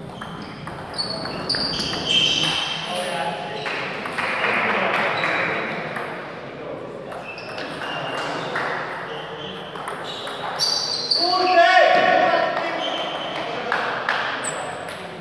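A celluloid table tennis ball clicking off bats and the table in a string of quick sharp strokes, echoing in a sports hall. People's voices carry in the hall, loudest in a call about twelve seconds in.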